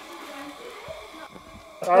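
Propane camping lantern being lit: a quiet, faint hiss of gas with light handling ticks. A man's voice comes in loudly just before the end.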